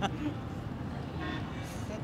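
Steady low rumble of distant city traffic, with a brief faint horn toot a little over a second in.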